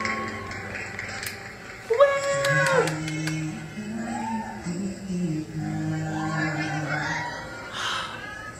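Male vocalist singing a slow song in long, held notes over backing music. About two seconds in, a louder, higher voice holds a note for about a second.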